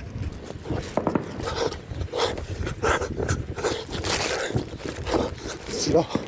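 Muffled rustling and scraping handling noise on a phone's microphone, with irregular soft knocks, as the phone is carried with its lens covered.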